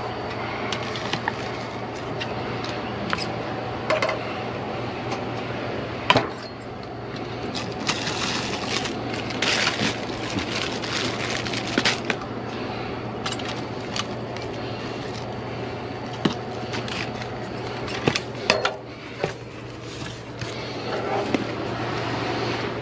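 Gloved hands rummaging through trash in a dumpster: plastic bags and packaging crinkle and cardboard shifts, with scattered clicks and knocks. A steady low hum runs underneath.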